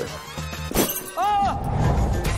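Trailer sound design at a scene cut: a single sharp crash-like hit a little under a second in, a short pitched sound that rises and falls, and then loud music swelling in.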